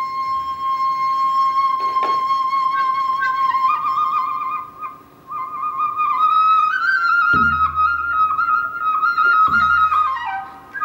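Sogeum, a small Korean transverse bamboo flute, holds one long steady note, then plays an ornamented phrase that steps higher after a short breath about five seconds in. A janggu hourglass drum accompanies with a sharp stroke about two seconds in and deep booms near the end.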